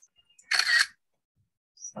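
A single camera shutter click, short and sharp, about half a second in: a group photo being snapped. A voice starts just before the end.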